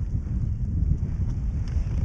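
Wind buffeting the microphone of an outdoor action camera: a steady low rumble with a few faint ticks.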